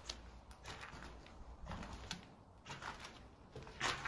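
Faint footsteps while walking, with a few scattered light clicks and a low steady rumble underneath.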